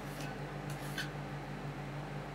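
Metal spatulas scraping on a thin sheet of frozen ice cream on a stainless-steel rolled-ice-cream cold plate: two short scrapes in the first second. Under them runs the steady hum of the cold plate's refrigeration unit.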